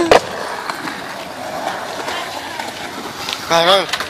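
Skateboard wheels rolling on smooth concrete, a steady rumble that follows a sharp knock at the start.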